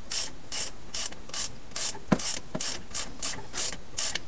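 Hand ratchet with a 3/8 socket being swung back and forth to loosen the drain plug on a GM 14-bolt rear axle: a rapid burst of pawl clicks on each return stroke, nearly three strokes a second, with a few sharper clicks in the middle.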